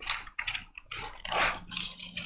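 Thin Bible pages being turned and handled at a lectern: a few short, irregular paper rustles.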